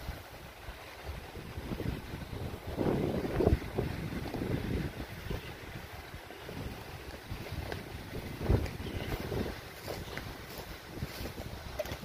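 Footsteps and rustling through moss and low shrubs on a forest floor, with wind rumbling on the phone's microphone. A louder stretch of rustling comes about three seconds in, and a single thump near the middle-late part.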